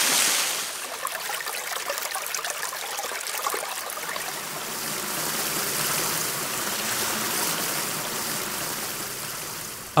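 Water rushing and splashing over rocks in a stream: a steady rushing noise, loudest in the first second and then even.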